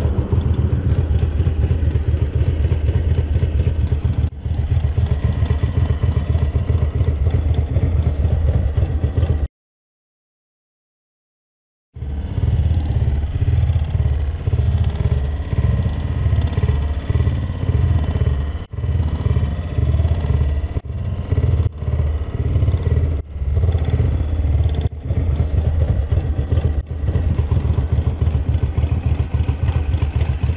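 Ducati V-twin motorcycle engine idling steadily while the bike stands still. The sound cuts out completely for about two and a half seconds partway through, then the idle carries on with a few brief dips.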